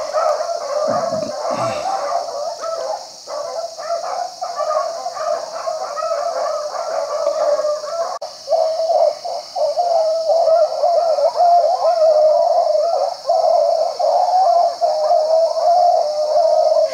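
A pack of beagles baying on a rabbit's track, a continuous chorus of many overlapping voices that grows louder from about halfway through.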